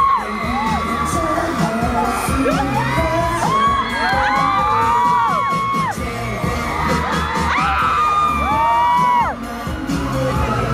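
Live K-pop song over an outdoor concert sound system, with a steady beat and a male singer on microphone, while fans close to the recorder scream over it in many overlapping long, high cries that rise and fall.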